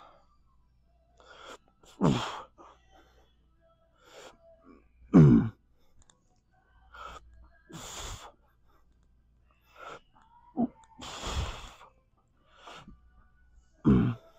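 A man breathing hard through a set of dumbbell front raises: a loud, strained exhale about every three seconds, one with each rep, some of them voiced and falling in pitch like a grunt, with quicker, smaller breaths between.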